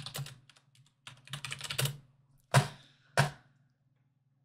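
Computer keyboard typing: quick runs of key clicks, then two louder strokes in the second half.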